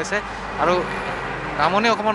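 A heavy truck driving past close by, its engine and tyre noise loudest in the first second or so and then fading.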